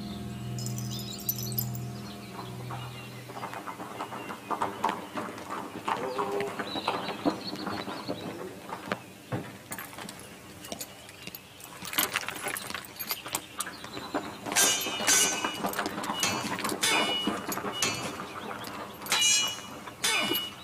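Low background music fades out in the first few seconds. Scattered knocks and clicks follow, and in the second half come a series of sharp metallic clinks and jingles.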